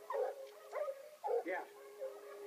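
Hunting hounds baying at a mountain lion at close quarters: a quick run of short, pitched yelping barks about twice a second, then a longer held note.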